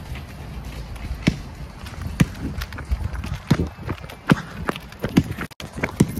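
Sneakers running and stepping on asphalt: a string of irregular footfalls about every half second to a second, over a steady low rumble from the moving phone.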